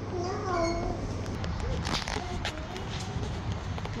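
A toddler's short, high-pitched, wordless vocal sounds: one gliding cry near the start and a shorter one past the middle. A few sharp clicks come about two seconds in.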